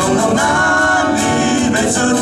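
Live acoustic band: male voices singing over strummed acoustic guitars and a cajon beat.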